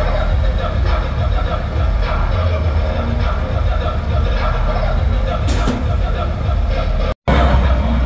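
Loud street din from a line of modified Jeeps: a steady low rumble from their engines and roof-mounted sound systems, with voices and some music over it. The sound drops out completely for an instant just after seven seconds in.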